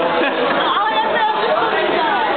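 Overlapping chatter of several people talking at once in a busy room, steady throughout with no single voice standing out clearly.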